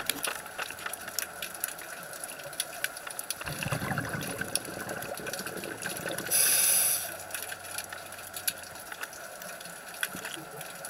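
Underwater recording of a scuba diver breathing through a regulator: a low bubbly gurgle of exhaled air about three and a half seconds in, then a short loud hiss of an inhalation a little before the seven-second mark, over a steady bed of scattered clicks and crackle.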